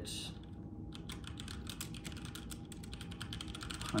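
Computer keyboard being typed on: a quick, irregular run of key clicks as a short phrase is entered.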